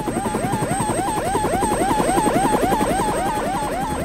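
Cartoon helicopter sound effect: a fast rotor chop with a rising swoop repeated about four times a second.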